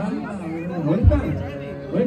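Amplified music from a sound system with voices over it, and a deep low thump about a second in.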